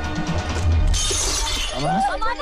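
Glass shattering about a second in, over a film score with a deep pulsing bass.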